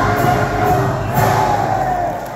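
Concert band playing live, with held chords.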